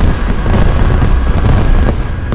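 Fireworks going off: a continuous low rumble of booms with crackle, and a sharp crack near the end.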